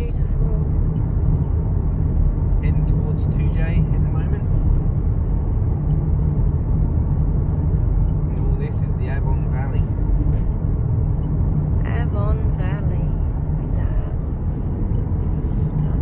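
Steady road and engine noise inside a moving car's cabin, a continuous low rumble, with faint voices at times.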